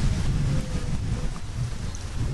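Wind buffeting the camera microphone: an uneven low rumble with a faint hiss above it.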